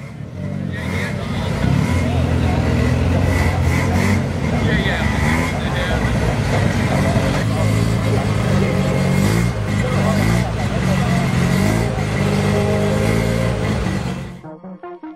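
Car engine running, with people talking over it; the sound rises in over the first second or two.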